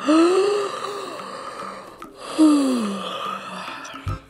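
Two long, breathy sighs from a person's voice, one at the start and one about two seconds in, each rising briefly in pitch and then falling away as it trails off.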